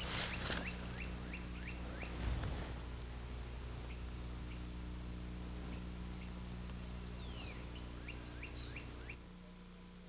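A songbird singing faintly, twice: each song is a falling note followed by a quick run of short rising chirps, about five a second. Under it runs a steady low electrical hum.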